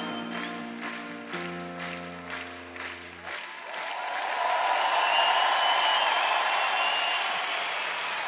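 A live band's closing chord holds and stops about three seconds in, then a large arena audience applauds, the applause swelling louder.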